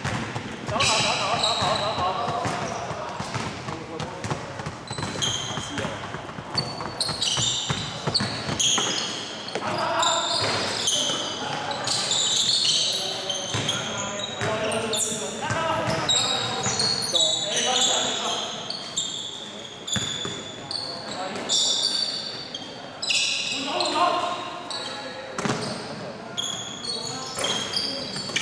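Indoor basketball play on a wooden court: the ball bouncing, many short, high-pitched sneaker squeaks, and players calling out, all echoing in a large sports hall.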